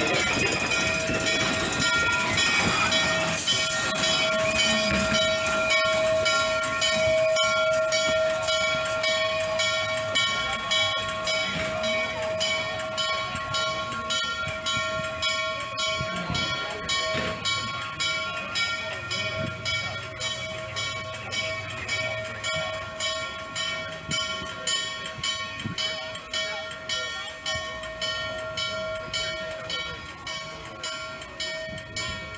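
Norfolk & Western 611, a J-class 4-8-4 steam locomotive, moving off: its exhaust beats fall into an even, slow rhythm and fade as it draws away, over a steady high whine.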